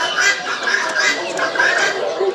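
Many caged poultry clucking and calling over one another in a dense, continuous chorus, with calls overlapping about three times a second.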